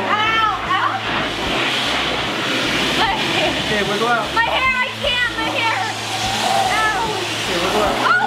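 A girl laughing and squealing without words while she is pulled out through the stretched neck of a giant latex balloon, over a steady rubbing rustle of the rubber.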